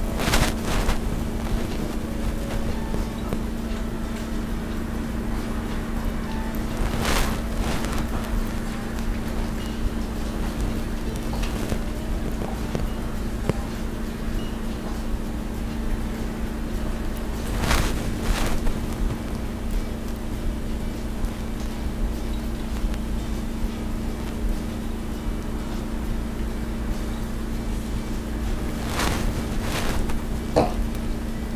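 Steady low hum under faint background music, broken by a few brief rustling noises.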